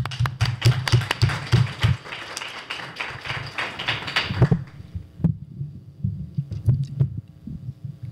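Handling noise from a desk microphone on its stand as it is picked up and passed along a table: a few seconds of rubbing and many sharp clicks, then scattered knocks and thumps as it is set down.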